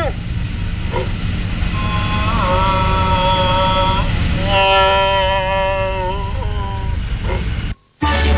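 Car with a roof-mounted loudspeaker horn: a steady low engine and street rumble, over which the loudspeaker sounds two long held notes, the second lower than the first. The sound cuts off abruptly just before the end.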